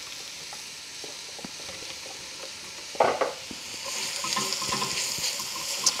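Vegetable oil sizzling in an enamelled cast-iron Dutch oven as pulsed mushrooms are tipped in on top of chopped onion. A sharp knock about three seconds in, then from about four seconds the sizzle grows louder and hissier.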